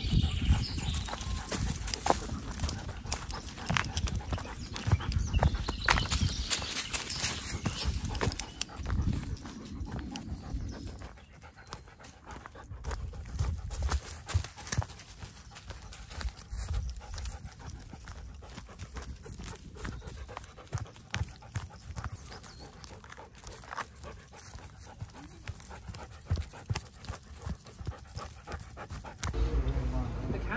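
A husky-malamute cross panting as it walks on a lead, with footsteps crunching through dry leaf litter. The crunching is busier and louder for the first third, then quieter.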